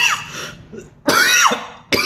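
A man coughing three times into his hand: one at the start, one about a second in, and a third right at the end.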